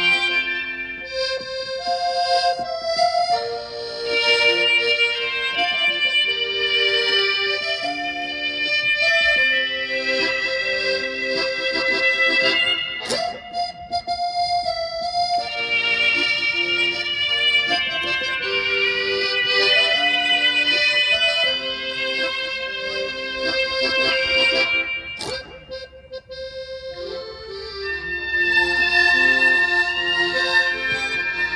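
Piano accordion and electric violin playing a melody together in long held notes. The music drops to a short lull a few seconds before the end, then swells again.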